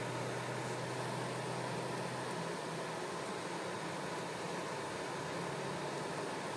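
Steady cabin noise inside a moving car: road and engine hum with a fan-like hiss. The low hum steps up slightly in pitch about two and a half seconds in.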